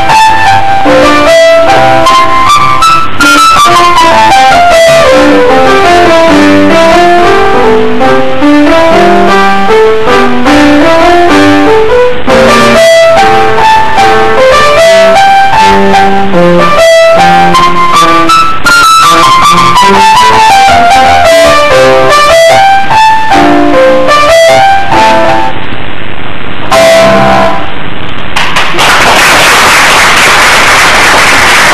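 Grand piano played solo by a young child: a short piece of running notes that climb and fall in repeated patterns, ending with two short pauses and a final chord near the end. Audience applause begins just after the last chord.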